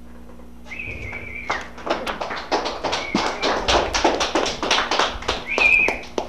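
A few people clapping in quick, irregular claps, starting about a second and a half in and growing louder. Three short, high, steady whistle-like tones sound just before the clapping, about three seconds in, and near the end.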